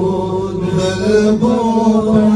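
Several men chanting a devotional naat together into microphones, amplified, in long held notes.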